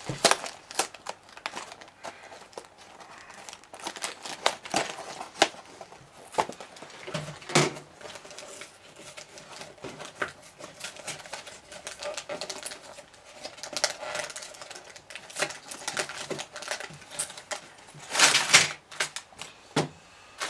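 A small cardboard LEGO box being opened by hand, with scattered clicks and scrapes of the card flaps and tabs. Near the end comes a louder plastic rustle as the sealed bags of parts come out onto the table.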